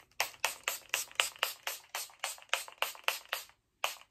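Fine-mist pump spray bottle of facial prep spray pumped rapidly at the face: a quick, even run of short spritzes, about four a second, a brief pause, then one last spritz near the end.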